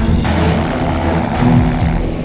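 Steady rush of wind and engine noise from a Revo weight-shift trike's engine and pusher propeller at speed, heard from on board, with a music soundtrack continuing underneath.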